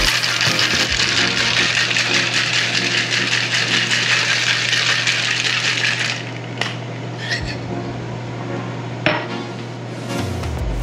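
Stainless steel cocktail shaker shaken hard, a loud steady rattle that stops about six seconds in; a few light clinks follow.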